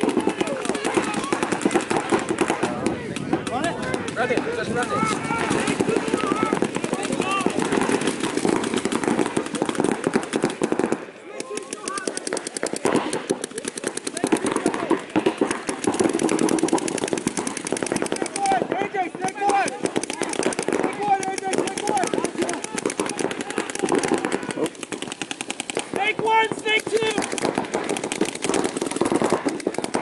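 Paintball markers firing in rapid strings, a dense run of fast pops that keeps going almost throughout, with players' shouted calls mixed in.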